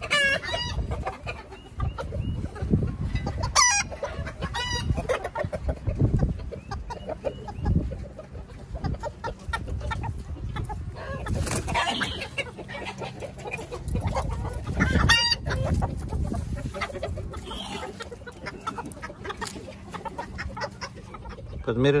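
Backyard chickens clucking, with roosters crowing at intervals, over the low rustle and thumps of someone walking on dirt.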